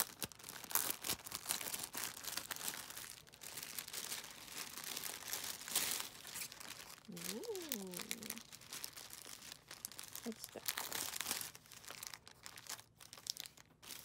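Plastic packaging crinkling and rustling in quick crackles as a plastic mailer bag is pulled open and a cellophane-wrapped kit is slid out and handled; the crackling thins out near the end.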